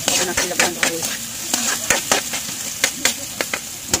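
Chopped onion frying in hot oil in a metal wok, sizzling steadily, while a metal spatula stirs it and scrapes and taps the pan in quick, irregular clicks.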